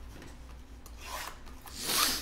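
Hand rubbing and sliding over a shrink-wrapped cardboard trading-card box, two scraping swishes, the second louder and peaking near the end.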